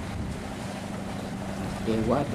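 Steady engine drone of a purse-seine fishing boat running in through the surf, mixed with the wash of waves and wind buffeting the microphone.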